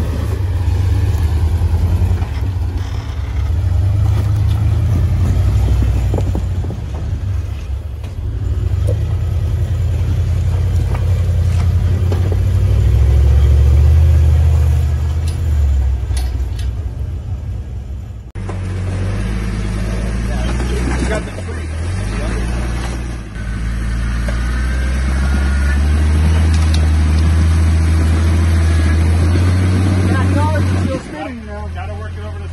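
Engines of rock-crawling buggies running at low, crawling speed over boulders, the throttle swelling and easing as they climb. About 18 seconds in the sound changes abruptly to a second buggy working up a rock ledge, with a brief dip and rise in engine pitch soon after.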